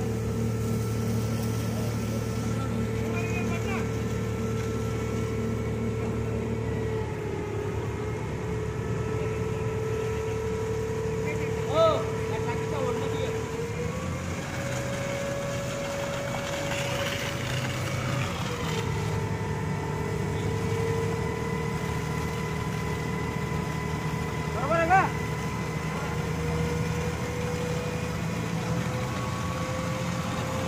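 A fire engine's engine running steadily while it drives the pump feeding the hose jet, its pitch stepping up for a few seconds midway and then dropping back. Two brief, louder sounds cut in, one near the middle and one later.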